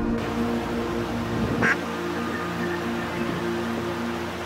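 Duck quacking, from a mallard hen with her ducklings on shallow water, over background music with steady held notes.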